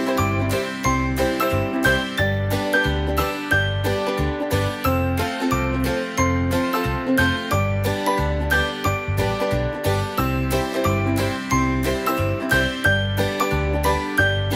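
Upbeat background music of plucked strings over regular bass notes.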